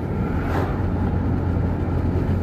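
Steady low hum of a car's engine and tyres on the road, heard from inside the moving car's cabin.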